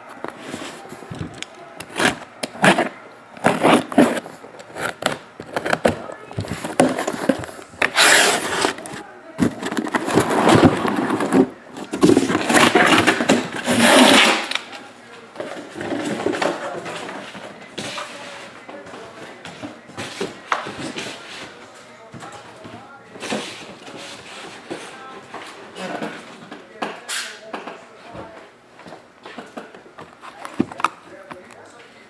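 Cardboard shipping case being opened and unpacked by hand: scraping, rustling and knocking of tape, cardboard and shrink-wrapped boxes. There are longer noisy bursts about eight seconds in and again from about twelve to fourteen seconds, and lighter knocks later as boxes are set down and stacked.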